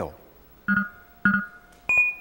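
Quiz-show electronic chime sound effects: two matching short tones about half a second apart, then a click and a single higher ping near the end.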